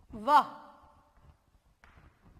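Speech only: a woman says a single drawn-out word, 'वह' (Hindi for 'that').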